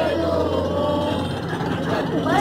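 Bus engine running, a steady low hum heard inside the passenger cabin, with children's voices over it.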